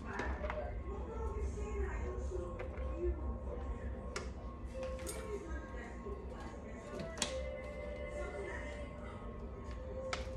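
Faint background music with a singing voice, with a steady low hum beneath it. A few light clicks and taps of kitchen utensils on dishes come through, about four, five and seven seconds in.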